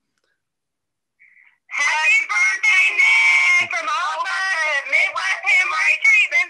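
A group of clinic staff calling out a happy-birthday greeting together over a phone's speaker, thin and tinny with no low end, the voices overlapping and shouted. A short faint tone comes just before they start.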